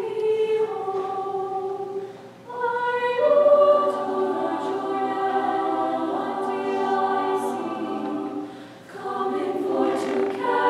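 Girls' a cappella choir singing held chords in several parts, breaking off briefly about two seconds in and again near the end.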